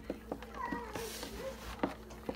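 Hands squeezing and crumbling dry, chalky powder clumps in a plastic tub, making scattered crisp crunches. About half a second in, a short high cry rises and falls in pitch in the background, like a meow.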